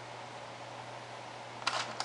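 Steady faint hiss and low hum of room noise, with a short scratchy rustle near the end as a bobby pin is worked into the hair at the top of the head.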